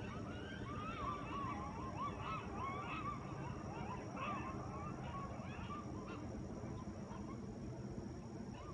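A pack of coyotes yipping and howling together: many short, wavering calls overlap at once, rising and falling in pitch.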